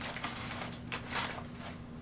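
Brown kraft packing paper crinkling in several short bursts as a kitten moves around inside it, loudest a little over a second in.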